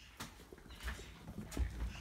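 Footsteps and the knocks and rubbing of a handheld phone being carried, as a series of irregular thuds with the heaviest near the end.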